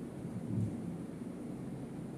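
Low, steady room rumble with a soft low thump about half a second in.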